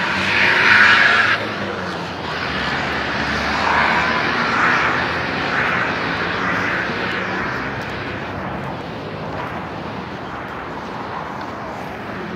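Traffic noise from cars passing on a city road, swelling and fading as they go by. A louder rush in the first second or so cuts off suddenly.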